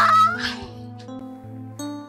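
A short, loud, high-pitched squeal in a woman's voice in the first half-second, then soft background music with held notes.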